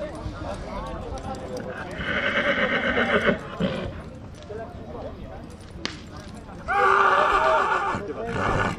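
A horse whinnying twice: a long call about two seconds in, and another starting near the end. Both stand out above the background.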